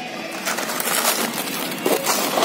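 A pigeon cooing, mixed with rustling and scraping noise that grows busier about half a second in.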